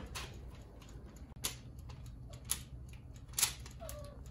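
A metal spoon tapping and scraping against a plastic blender jar as a wet ground-meat mixture is scooped out: five short, sharp clicks about a second apart, the loudest about three and a half seconds in.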